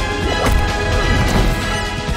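Driving orchestral film score, with fight sound effects over it: a smashing hit about half a second in.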